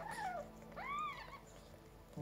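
A cat meows twice: a short call falling in pitch, then a longer call that rises and falls.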